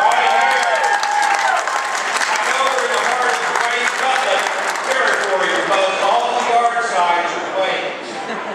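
Audience applause with cheering voices rising over the clapping; the clapping tapers near the end.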